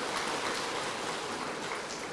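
Audience applauding, tapering off slightly near the end.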